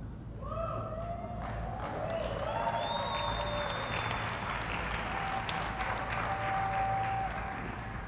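A large audience applauding, building up over the first couple of seconds and then holding steady.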